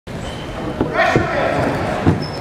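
Voices calling out in a gym during a wrestling match, with two short dull thuds about a second in.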